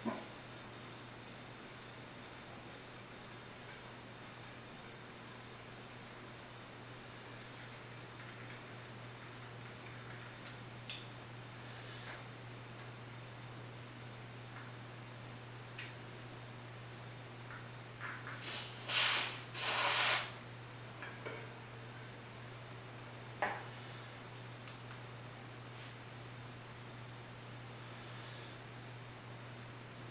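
Steady low hum of room tone with a few small clicks as a bicycle tyre valve and pump hose are handled. About two-thirds of the way through come two short hisses of air from the valve as the pump head is pressed on, the tyre still holding some pressure.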